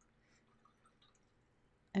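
Faint dripping and swishing of a paintbrush being rinsed in a glass jar of water, very quiet against room tone.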